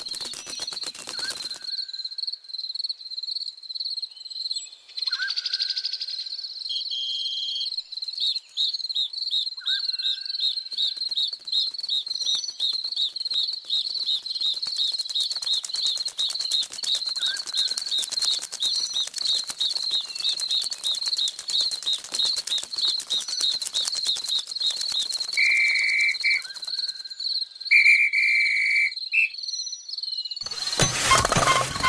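Cricket-like insect trill, a steady high tone pulsing about four times a second, with a few brief higher chirps over it.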